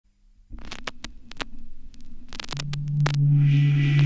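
Vinyl record starting to play: surface crackle and sharp clicks over a low rumble, then a deep steady synth tone comes in about two and a half seconds in, with an airy high pad swelling in just after. The opening of a deep house track.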